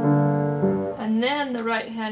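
Steinway grand piano playing left-hand notes in an even pulse of about two a second, the last struck about half a second in and left ringing as a woman's voice begins talking about a second in.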